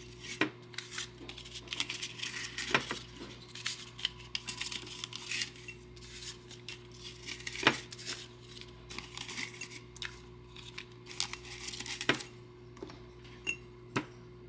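Paper dollar bills being handled and rustled as a small stack is picked up from a desk and stuffed into a glass gumball-machine jar, with a few sharp clicks and taps among the rustling. A faint steady hum runs underneath.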